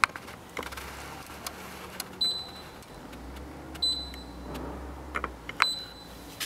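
Digital control panel of a Galaxy swing-away heat press beeping three times, short high beeps about a second and a half apart, with light clicks in between.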